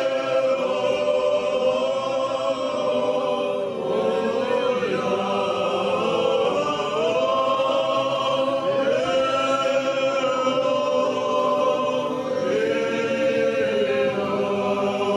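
Choir singing slow sacred chant, the voices holding long notes together and moving to new chords every few seconds.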